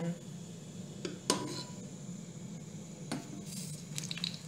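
A metal kitchen utensil clinks twice against a frying pan or dish, the first clink leaving a short ringing tone, as potatoes are picked up to go into the hot oil.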